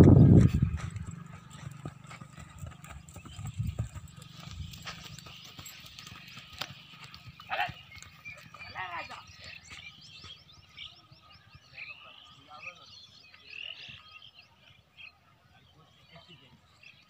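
A horse galloping over a dry dirt field, its hoofbeats heavy and close in the first second, then fading as it goes off. Distant shouts and calls sound through the middle and later part.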